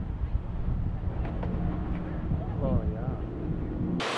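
Wind rumbling on the camera microphone over a steady low hum, with a faint voice briefly about two and a half seconds in.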